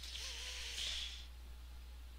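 A person's soft, breathy sigh into the microphone, about a second long, with a faint hummed note under it.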